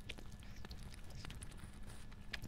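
Faint chewing and handling of a flaky pastry, with soft irregular clicks over a low steady hum.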